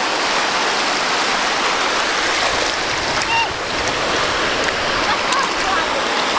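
Sea surf: small waves breaking and washing over the shallows at the water's edge, a steady rush.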